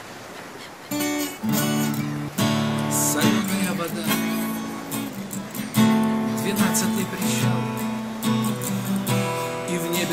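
Takamine acoustic guitar strummed, playing chords from about a second in as the introduction to a song.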